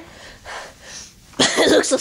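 A child breathing close to the microphone, two soft breathy puffs, then a loud burst of the child's voice about one and a half seconds in.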